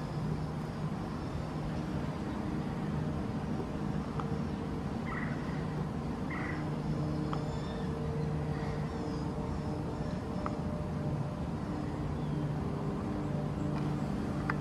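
Steady low machine hum, like a distant engine or air-conditioning unit, with a few faint short chirps about five and six and a half seconds in.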